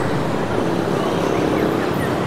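Steady city street traffic noise, mostly motorbikes running along the road.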